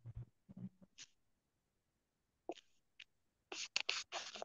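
Mostly quiet, with faint scattered whispering and breath sounds, and a short cluster of hissy whisper-like sounds near the end.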